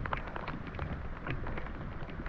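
Rain falling on lake water: a steady hiss dotted with many small, sharp drop ticks, over a low rumble.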